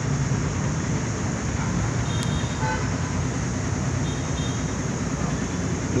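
Steady road-traffic noise, a low even rumble, with a faint short horn toot about two and a half seconds in.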